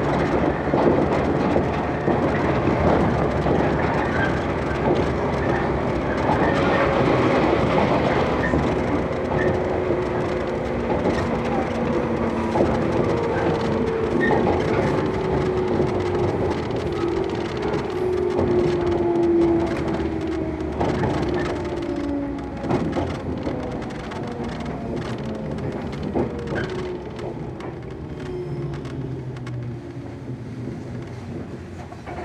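Inside a Shinano Railway 115 series electric train: the traction-motor whine falls steadily in pitch as the train slows for a station, over running noise and wheels clacking on rail joints. The sound gets quieter through the second half.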